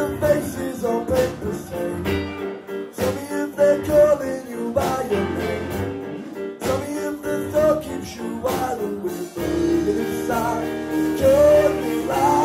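Live band playing a soul-pop song: a male lead vocal over electric guitar and keyboard chords with drums.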